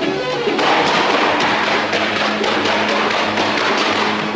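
Music turning into a fast, dense percussion roll over a held low note, which begins about half a second in and runs on without a tune.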